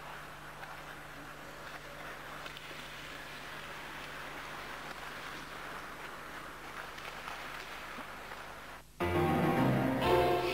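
A steady, even noise with a low hum underneath, without clear strikes or rhythm. About nine seconds in it cuts suddenly to louder instrumental music.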